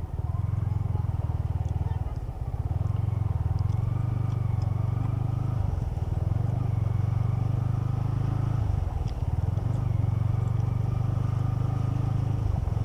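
Motorcycle engine running steadily while the bike is ridden through shallow surf on wet sand. The engine note dips briefly three times, about two, six and nine seconds in.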